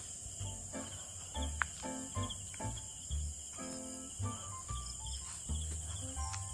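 Crickets chirping in a steady, high-pitched chorus.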